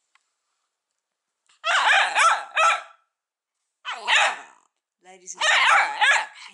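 Bedlington terrier puppy barking in rapid, high-pitched runs of yaps: a burst of about a second and a half starting about 1.5 s in, a shorter one around 4 s, and another starting near the end.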